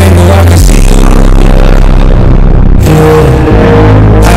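Heavily bass-boosted, distorted hip-hop track, instrumental with no vocals: a loud sustained bass note drops lower about half a second in and shifts again near the end, under layered synth tones. The treble briefly falls away around the middle.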